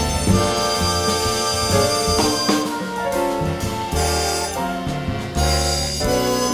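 A jazz big band playing a slow piece, wind instruments holding long notes over a moving bass line.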